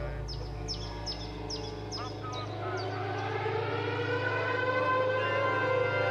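Air-raid siren winding up, its wail rising slowly in pitch from about halfway through, over a steady low drone. Before it comes a run of quick falling high chirps, about two or three a second.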